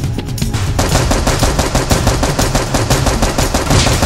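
Rapid machine-gun fire, a dense even string of shots at about ten a second, thickest from about a second in, laid over background action music.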